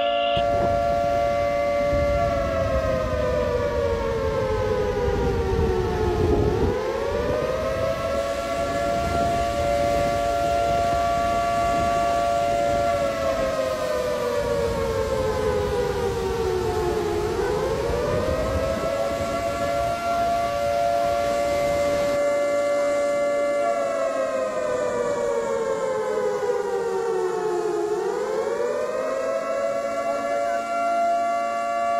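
A wailing siren with a steady held tone that slides down in pitch over about four seconds and then swoops back up, three times over, with a low rush of water beneath it for the first two-thirds.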